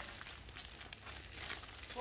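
Clear plastic bag of sun-dried beef crinkling as it is handled, a run of irregular light crackles.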